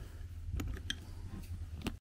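Low steady room hum with a few faint clicks and knocks from people moving about.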